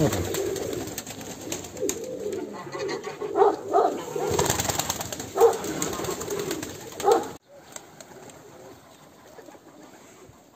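Domestic pigeons cooing again and again in a loft, with wing flapping and rustling among them. The sound cuts off abruptly about seven seconds in, leaving only a faint outdoor background.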